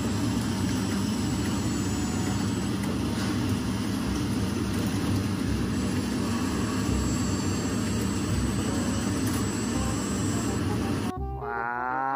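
Komatsu WA475 wheel loader's engine running steadily, a dense low rumble without break until about a second before the end.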